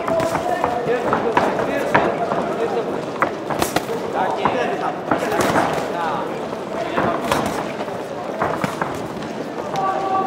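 Amateur boxing bout: scattered shouting voices from ringside, with sharp smacks of gloved punches every second or two.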